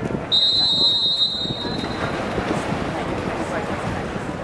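A referee's whistle gives one long, steady high blast starting about half a second in and lasting over a second, the signal for backstroke swimmers to get into the water for the start. Crowd chatter and hall noise continue underneath.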